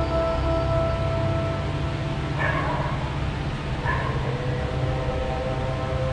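Slow ambient music with long held tones, and a dog barking twice, about two and a half and four seconds in.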